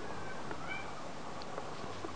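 Tiny kitten mewing faintly: a couple of short, high-pitched mews in the first second, one rising in pitch.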